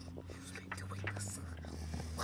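Faint whispering over a low steady hum, with a few light clicks.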